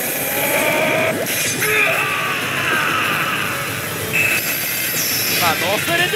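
Oh! Bancho 3 pachislot machine's sound effects and voice clips over the dense, steady din of a pachinko hall, with held and sliding electronic tones and a voice with a wavering pitch near the end.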